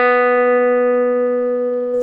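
Fender Telecaster electric guitar: one picked note held and ringing steadily, slowly fading, clean and undistorted, as part of a pedal-steel style lick.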